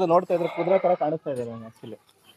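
A Jamunapari goat buck bleating while it is held by the head, with men talking over it.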